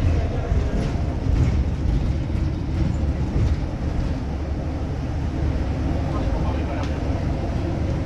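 Steady low rumble of a double-decker bus on the move, heard from inside on the upper deck: engine and road noise carried through the body of the bus.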